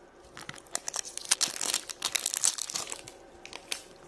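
Printed wrapper being torn and peeled off a plastic toy surprise egg: a run of irregular crinkling crackles, thickest in the middle.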